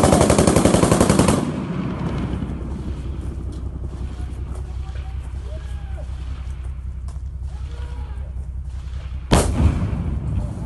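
Close, rapid automatic gunfire in one sustained burst lasting about a second and a half, followed by scattered fainter shots. One single loud blast comes near the end.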